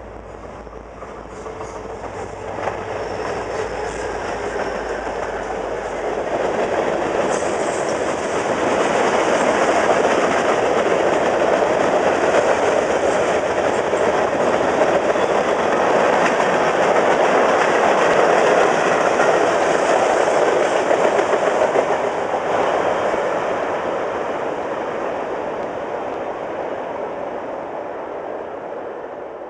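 Short freight train rolling past, its steel wheels running on the rails. The sound builds over the first ten seconds, holds loudest through the middle as the cars pass, and fades away near the end.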